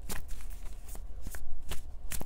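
A tarot deck being shuffled by hand: irregular sharp card flicks and snaps, a few a second.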